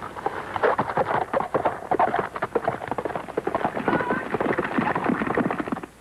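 A horse's hoofbeats: a rapid, irregular clatter of hooves on a rocky trail.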